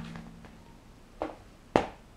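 Handling noise of cardboard LP record jackets being moved about on a table: two short knocks, a light one just past a second in and a sharper one near the end.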